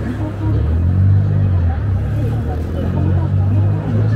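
Busy city street ambience: many people's voices and chatter over the low hum of road traffic, with a vehicle engine swelling up about a second in.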